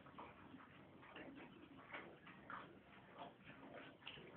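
Horse eating, with faint repeated lip smacks and chewing clicks about twice a second.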